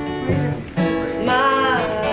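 Acoustic guitars strummed in chords, with a fresh strum just under a second in, and a voice singing a held, bending note in the second half.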